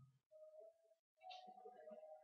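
Near silence, with faint, distant voices.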